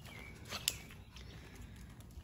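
Quiet outdoor background with a low rumble, a short faint chirp right at the start and two soft clicks about half a second in.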